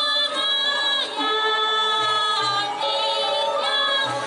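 Balinese gong kebyar gamelan playing: bronze metallophones ring in long, shimmering held tones across several pitches, with low notes sounding about two seconds in.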